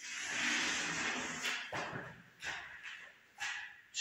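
Chalk drawing a large arc on a blackboard: one long scratching stroke for about the first second and a half, then several shorter strokes and taps.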